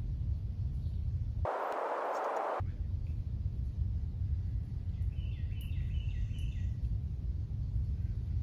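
Outdoor ambience with a steady low rumble of wind on the microphone, broken about one and a half seconds in by a short hiss. Later a bird calls a quick run of five or so repeated chirps.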